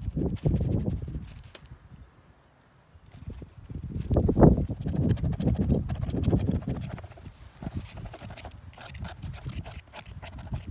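Wind buffeting the microphone in gusts: a low rumble that dies away for a moment about two seconds in, then comes back stronger.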